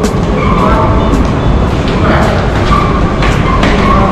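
A train running through the rail station: a loud, steady rumble.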